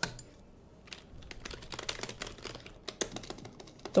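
Typing on a computer keyboard: a quick, uneven run of key clicks starting about a second in.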